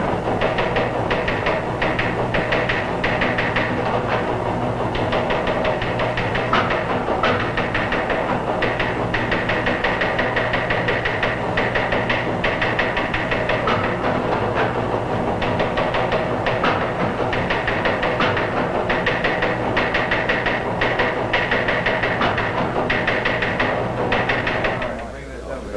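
Teletype machine clattering rapidly and steadily as it prints out a news-wire story, over a low steady hum.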